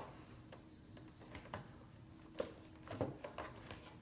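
Scissors snipping at the thin plastic window of a toy box: several faint, short snips at irregular intervals.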